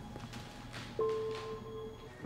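Quiet, tense film score of low sustained tones, with a held note coming in about a second in.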